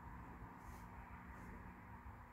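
Near silence: faint steady room hum, with two soft, brief scratches, one under a second in and one about a second and a half in.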